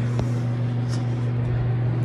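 A steady low hum, with one faint click about a fifth of a second in.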